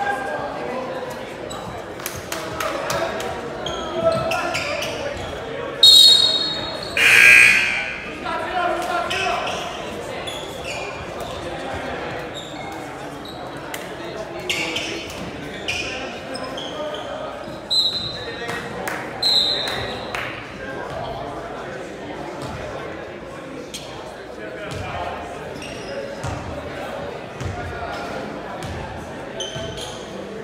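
Basketball bouncing on a hardwood gym court, with voices echoing through the large hall. A few short high-pitched sounds cut through, the loudest about six seconds in and two more near the two-thirds mark.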